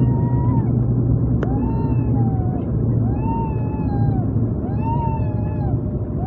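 Turboprop airliner's engines and propellers rumbling steadily, heard inside the cabin as the aircraft rolls out on the runway after landing. Over the rumble, a wailing tone that rises and falls repeats about every second and a half, with a single click about a second and a half in.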